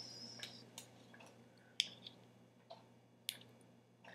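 Tiny plastic miniature pieces being handled and pressed together in the fingers: a few light clicks, the two sharpest about two and three seconds in.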